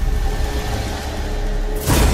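Dramatic suspense background score: a low sustained drone with a steady held tone, and a sweeping whoosh near the end.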